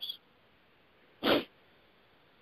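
A single short breath noise from a man on a telephone conference line, a little over a second in, with near silence on the line around it.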